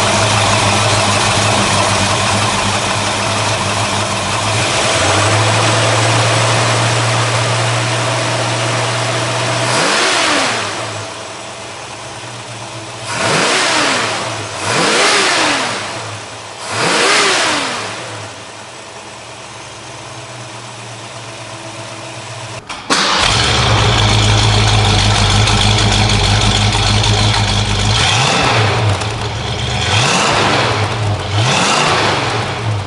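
A 1966 Ford Mustang GT's V8 idling steadily, then blipped three times in quick revs that rise and fall in pitch, settling back to a quieter idle. About 23 seconds in the sound jumps suddenly to a louder, deeper exhaust note, with more revs near the end.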